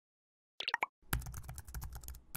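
Computer keyboard typing sound effect, a quick run of key clicks as text is typed into an animated search bar, preceded by a few short pops about half a second in.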